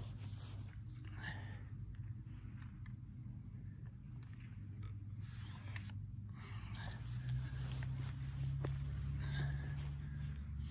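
Clothing rustling and soft handling noises as a crossbow is shouldered and aimed from a prone position, over a steady low hum, with a faint click about six seconds in.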